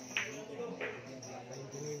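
Pool cue tip striking the cue ball with a sharp click just after the start, then a second click about two-thirds of a second later as the struck ball makes contact on the table.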